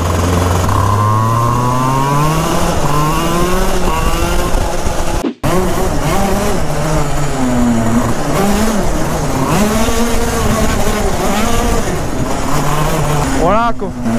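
125 cc two-stroke KZ shifter kart engine revving, its pitch climbing steadily over the first four seconds or so while the engine is being warmed up. After a sudden brief cut-out about five seconds in, the pitch falls and rises again and again as the throttle is eased and reopened, then climbs sharply near the end.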